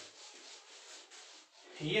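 A board duster rubbing across a whiteboard, erasing marker writing.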